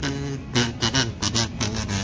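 Plastic kazoo hummed through in a run of short buzzy notes that change pitch, dying away near the end.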